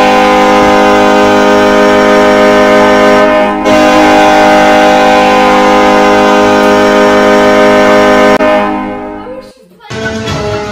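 Loud ice-hockey goal horn sound effect sounding for a goal, one long steady blast broken by a short gap about three and a half seconds in, then fading out near the end.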